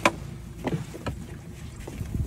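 A sharp knock in a small metal fishing boat, followed by a few softer knocks, over a low rumble of wind and water.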